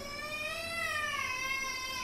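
One long drawn-out cry with a clear pitch, rising a little and then falling away, lasting about two seconds.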